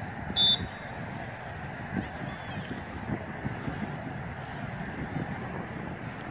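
A referee's whistle blown once in a short, sharp blast about half a second in, stopping play. Wind and faint field noise continue under it.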